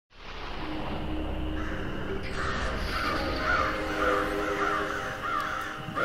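Crows cawing repeatedly, about two calls a second, over a steady low hum.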